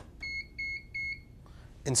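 An OKI LE810 thermal label printer's buzzer gives three short, evenly spaced, high beeps of one steady pitch as its printhead is released.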